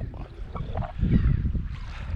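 Wind buffeting the camera microphone: an uneven low rumble that swells about a second in.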